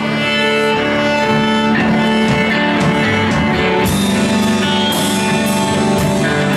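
Live band playing an instrumental passage: violin and electric guitars holding sustained notes, with cymbal strokes coming in about twice a second from about four seconds in.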